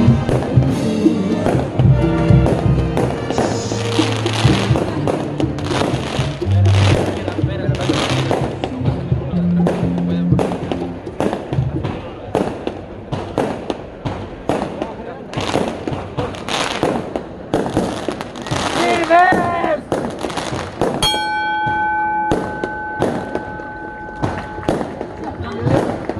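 Band music with low bass notes for the first ten seconds or so, over a long run of firework bangs and crackles that go on to about twenty seconds in. Near the end a steady high tone holds for about four seconds.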